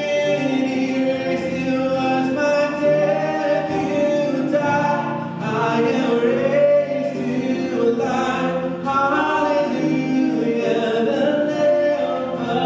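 Live contemporary worship music: a woman's lead vocal over acoustic and electric guitars, piano and drums, with many voices singing along in long held notes.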